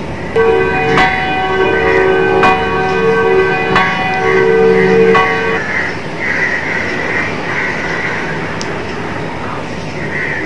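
Bells ringing several sustained notes with a fresh strike about every second and a half, marking the elevation of the chalice at the consecration of the Mass; the ringing stops a little past halfway.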